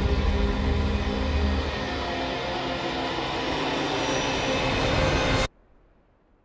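Sustained held chord of a film trailer's closing music over a deep rumble; the rumble thins about two seconds in and the whole sound cuts off abruptly just before the end.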